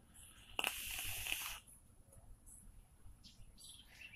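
A hit drawn on a vape, a Bonza rebuildable dripping atomizer on a Pulse box mod: a hiss of air and vapor about a second long, starting about half a second in. Only faint small sounds follow.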